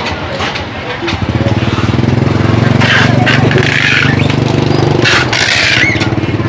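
A motorbike engine running close by, starting up loud about a second in and holding steady, its fast firing pulses giving a low buzz.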